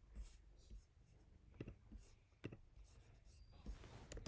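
Near silence: faint room tone with two soft, sharp clicks in the middle, the kind a computer mouse makes when it is clicked.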